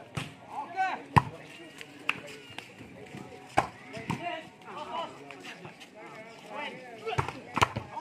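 A volleyball being struck during a rally: about seven sharp slaps of hands on the ball spread across the seconds, the loudest about a second in. Players and spectators shout between the hits.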